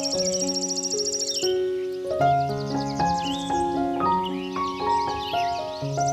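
Slow, gentle solo piano music playing over a nature ambience of rapidly pulsing high insect chirping and short bird calls. The chirping breaks off about a second and a half in and comes back more faintly.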